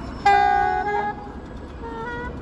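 Saxophone sounding one loud held note for about half a second, starting suddenly, then a short second note, over steady street hum.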